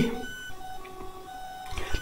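A pause between spoken phrases with only a faint, steady electronic whine of several thin tones over low room noise.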